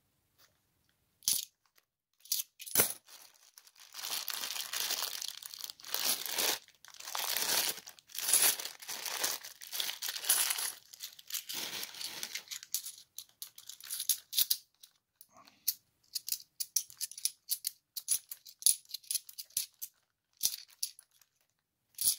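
£2 coins clinking in the hand as they are sorted, against the rustling and crinkling of clear plastic coin bags. Two sharp clinks come first, then several seconds of crinkling bag, then a quick run of coin clinks.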